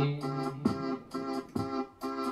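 Electronic keyboard playing short, repeated organ-like chords in a steady rhythm.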